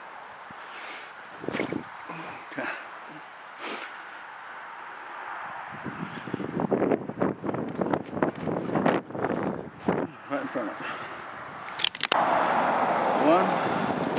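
Wind buffeting the camera's microphone in uneven gusts, with rustling and handling knocks from about six seconds in. A sharp click comes about twelve seconds in, then a steady rush of wind noise.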